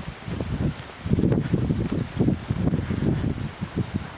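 Outdoor wind buffeting the microphone, low irregular rumbling gusts that grow stronger about a second in.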